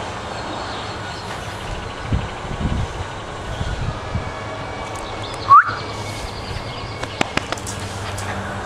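A small dog, a Miniature Schnauzer, gives one short rising whine about five and a half seconds in, over a steady low hum, with a few light clicks near the end.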